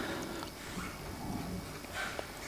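Quiet room tone picked up by the open desk microphones, with no distinct event.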